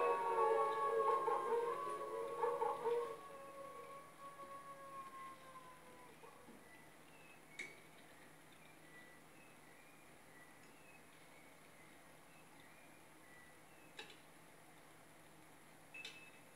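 Wolves howling on a film soundtrack, the long calls trailing off and dying away within the first few seconds. Then near-quiet background hiss with a couple of faint clicks.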